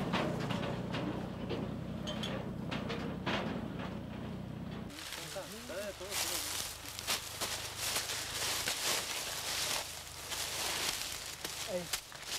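A tractor engine running at a steady idle, which stops abruptly about five seconds in. After that comes the rustling and crackling of dry banana leaves and footsteps on leaf litter as a bunch of bananas is cut and handled, with a few brief voices.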